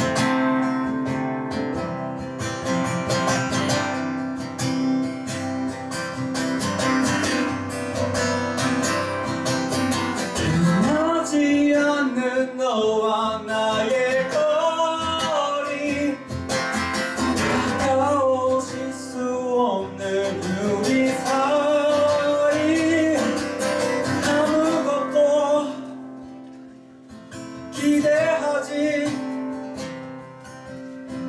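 Acoustic guitar strummed on its own for about the first ten seconds, then a male voice sings a melody over the strumming. The playing drops away briefly near the end before the guitar picks up again.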